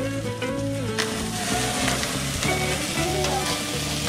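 Pieces of meat sizzling and crackling over open flames on a stainless-steel barbecue grill, the sizzle growing denser about a second in.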